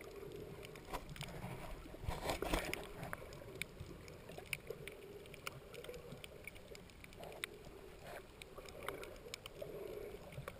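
Muffled underwater sound heard through a submerged GoPro's waterproof housing: a low steady rumble of moving water with scattered sharp clicks and crackles, a louder cluster of them about two and a half seconds in.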